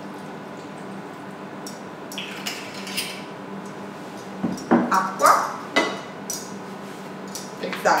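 Rosé vermouth poured from a glass bottle into a martini glass, followed by glass clinks and knocks as the bottle is set down on a wooden table, with a steady low hum underneath.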